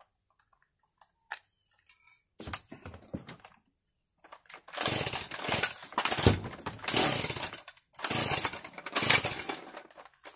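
Handling noise: irregular rustling and clunking of gear being moved close to the microphone, starting about halfway after a few faint clicks. No engine is running.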